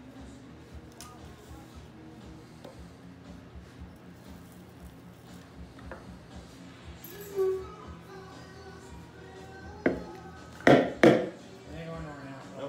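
Three sharp wooden knocks near the end, the last two loudest and close together: a wooden mallet head and its turned handle being struck together to seat the handle. Music plays softly underneath.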